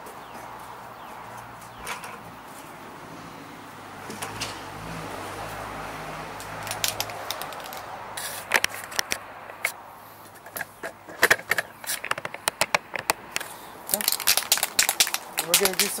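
Aerosol spray paint can being shaken, its mixing ball rattling in quick runs of clicks that come thicker near the end.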